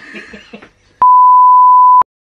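Faint voice sounds, then about halfway through a loud, steady 1 kHz beep begins: the broadcast test tone that goes with color bars. It holds one pitch for about a second and cuts off sharply.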